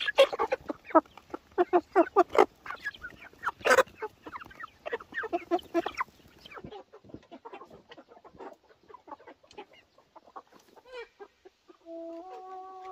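A flock of chickens clucking close by, many short calls in quick succession for the first half, then thinning to sparser, quieter clucks.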